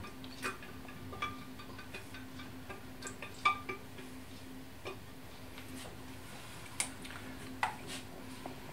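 Sparse, faint taps and clicks of kitchenware as the last of the puréed soup is emptied from a blender jug into a stainless steel saucepan, the loudest tap about three and a half seconds in. A low steady hum sits underneath and fades out about halfway.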